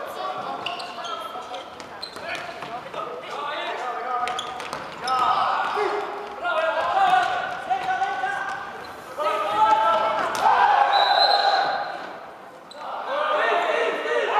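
Several men's voices talking and calling out, echoing in a large sports hall, with scattered sharp knocks.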